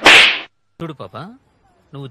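A single loud, sudden crack-like noise burst about half a second long, a whip-style sound effect dropped in at an edit. A few short voice-like sounds falling in pitch follow about a second in.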